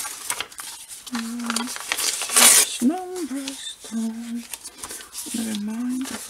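Paper scraps being handled and a glue stick rubbed across paper, with scattered small taps and rustles and one louder, brief rustle midway. A few short hums or murmurs from the crafter come between them.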